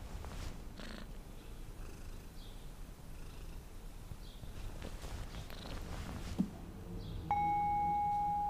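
Sphynx cat purring, a low steady rumble. Near the end a steady high tone starts suddenly and holds.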